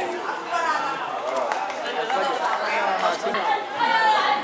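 Several people talking over one another: loud, unintelligible chatter of voices close to the microphone.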